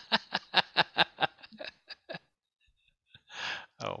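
A person laughing: a run of short laugh pulses, about four or five a second, that fade away over the first two seconds. A breathy sound follows a little after three seconds in.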